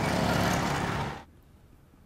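Road traffic noise, a vehicle passing close by, swelling in and cutting off abruptly about a second in.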